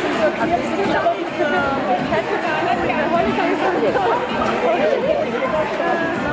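Crowd chatter: many people talking at once, their voices overlapping into a steady babble.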